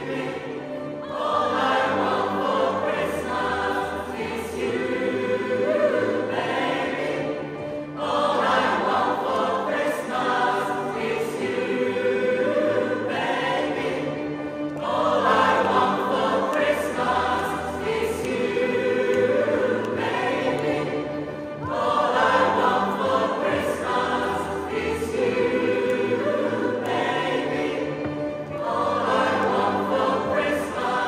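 Mixed choir of women's and men's voices singing in parts, in long phrases with brief breaks about every six to seven seconds.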